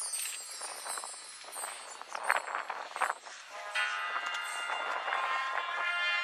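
High school marching band starting its show: a couple of loud sharp hits a little over two and three seconds in, then the brass and the rest of the band come in with held chords a bit past halfway.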